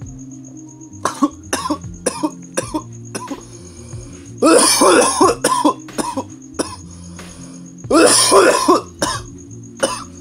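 A man coughing hard after a hit of cannabis smoke, in two loud fits: one about four and a half seconds in and another near eight seconds, with a few short sharp coughs before the first.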